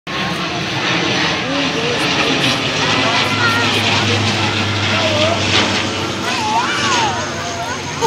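A steady, loud mechanical drone, like an engine, with children's high voices calling and chattering over it.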